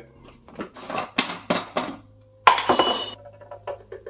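A series of knocks and clinks from a plastic whey-protein tub and scoop being handled, then a short, louder scraping rattle about two and a half seconds in as the powder is scooped.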